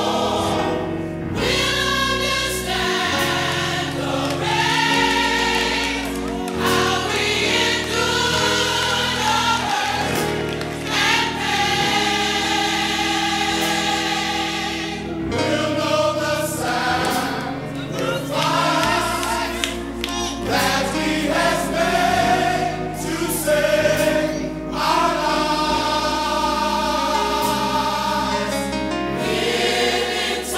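Gospel mass choir singing held, full chords over band accompaniment, with a bass line moving underneath.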